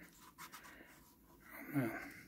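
Faint rustle of paper as a hardback photobook is held and handled, its pages shifting under the fingers. A man briefly says "oh man" near the end.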